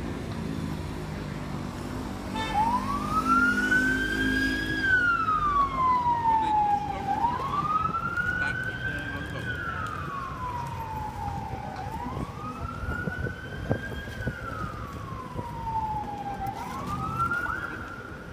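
Emergency vehicle siren in a slow wail, its pitch rising and falling about every four and a half seconds, starting a couple of seconds in. A low rumble lies under the first half.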